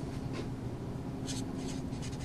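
Felt-tip marker writing on a white board: a handful of short, scratchy strokes as letters are formed, over a faint steady hum.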